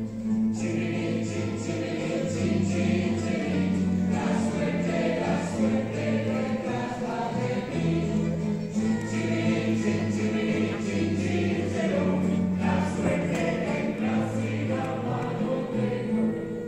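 A plectrum orchestra of mandolin-type instruments and guitars playing, with singing over it.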